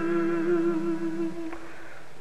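A long held hummed note, wavering slightly, that ends about one and a half seconds in.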